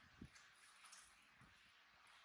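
Near silence: room tone with a brief soft knock about a quarter second in and a few fainter ticks.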